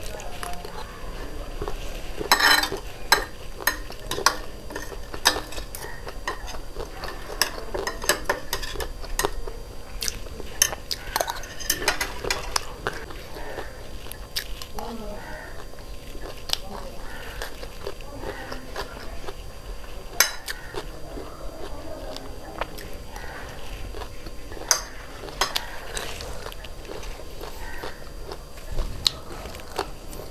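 Close-miked eating of crunchy chatpate, a spiced puffed-rice snack: crisp crunching and mouth sounds, with a metal spoon clicking against ceramic plates. The clicks come irregularly throughout, loudest about two to three seconds in.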